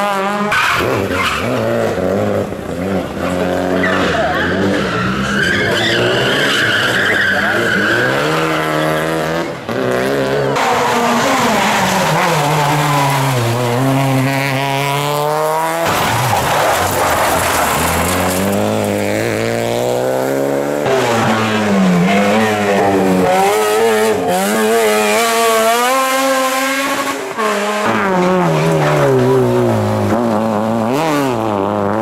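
Rally car engines revving hard as the cars pass one after another. The pitch climbs and drops repeatedly through gear changes and lifts. A sustained tyre squeal comes a few seconds in, as a car slides through a corner.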